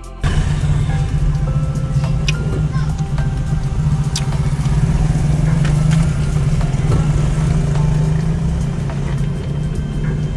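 Car driving on a rough rural road, heard from inside the cabin: a steady low rumble of engine and tyres, with a few brief clicks and knocks.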